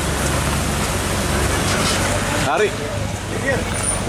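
Ashok Leyland truck's diesel engine running low and steady as the truck reverses slowly, with brief voices calling out in the second half.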